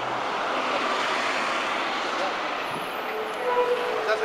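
A Volvo double-decker bus with a Plaxton President body passes close by: its engine and tyres swell to their loudest about a second in, then ease off as it pulls away, over general street traffic.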